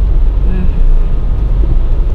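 Steady low rumble of a car's engine and tyres, heard from inside the cabin while driving.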